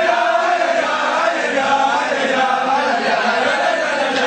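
A group of male voices singing a chant together, the melody running on without a pause.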